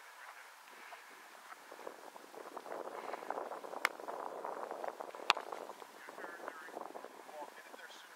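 A football being punted: a sharp smack about four seconds in, then the louder smack of the punter's foot striking the ball about a second and a half later, with faint voices in the background.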